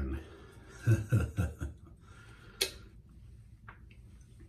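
A man chuckling briefly about a second in, then one sharp click a little past halfway, with a fainter one near the end.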